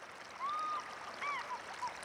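Soft river ambience of running water, with a few short bird chirps: one longer call about half a second in, then several quick short chirps.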